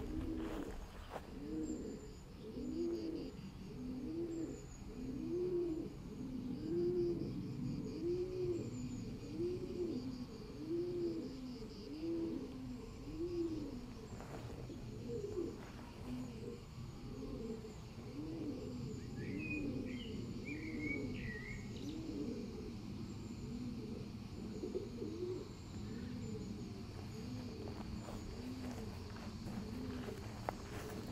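A dove cooing over and over at an even pace, about once a second, in low soft notes. A smaller bird chirps briefly a little past the middle.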